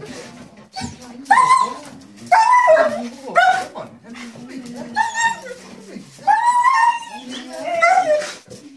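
German Shepherd whining and crying in excited greeting, a string of high cries about every half second to second, some bending up and down, with a longer one near the end. These are the dog's cries of happiness at its owner's return.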